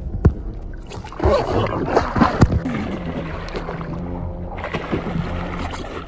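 Water splashing and churning as a person thrashes about in a lake, loudest between about one and two and a half seconds in, then settling.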